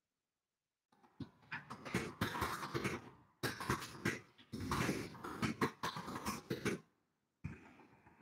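Fast typing on a computer keyboard: rapid runs of keystrokes starting about a second in, with two short pauses, stopping just before the end and starting again briefly.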